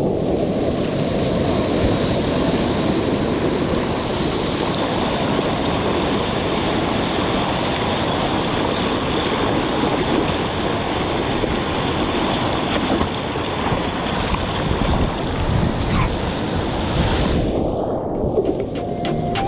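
Water rushing and splashing past a board-mounted action camera as a surfer paddles and rides broken whitewater lying on the board, with wind buffeting the microphone. A thin, steady high tone sits over the noise.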